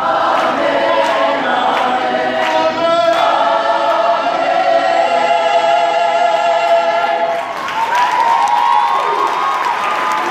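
Mixed high school choir singing, holding a long sustained chord through the middle before the voices move on again near the end.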